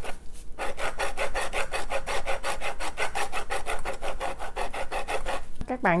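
An orange's rind scraped back and forth on a fine stainless-steel rasp zester, an even run of rasping strokes at about five a second, with a short break just after the start. Only the outer peel is being grated off for its scent, not the bitter white pith.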